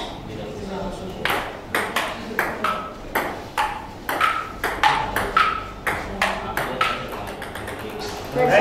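Table tennis rally: the celluloid-type plastic ball clicking off the paddles and bouncing on the table, a quick back-and-forth of sharp pings, about two or three a second, starting about a second in.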